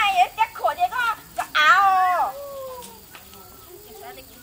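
Young women's voices calling out in quick, excited exclamations, then one loud, long high-pitched cry that falls in pitch about a second and a half in.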